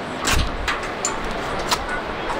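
Metal carabiners clicking and clinking as they are handled and clipped on a bungee jumper's ankle harness during the crew's safety checks. There are several sharp clicks, one with a dull knock about half a second in.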